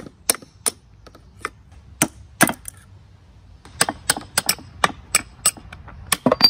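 Hammer striking a steel punch to tap pins out of the shift rails and forks of a Peugeot BA10 five-speed manual transmission: a few spaced, sharp metallic taps, then a quicker run of taps in the second half.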